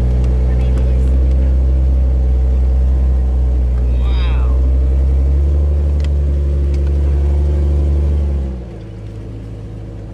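Vehicle engine pulling steadily under load with a loud, even low drone, then easing off and dropping to a much quieter run about eight and a half seconds in. A brief high squeal sounds about four seconds in.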